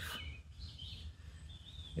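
Faint bird calls: a few short high chirps about half a second in and a thin high whistled note near the end, over quiet outdoor background noise.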